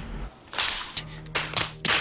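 A few sharp hand claps, one about half a second in and three more coming quicker near the end, over a low held musical note.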